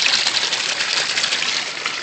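Water rushing and splashing steadily into an aquaponics system's plastic barrel tank as a grow bed drains, growing a little fainter.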